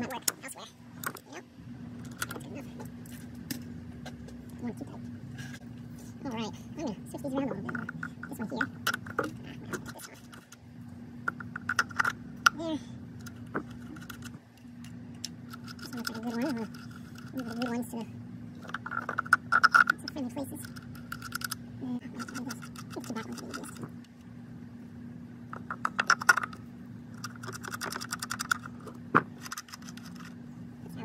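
Light clicks and rattles of ignition coils and their connectors being handled and pressed into place on a Dodge 4.7 L V8. Short irregular clicks are heard over a steady low hum.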